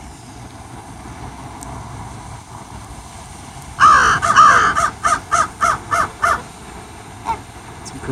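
Loud, repeated bird calls, about four seconds in: one long call, then about seven short calls in quick succession, roughly three a second.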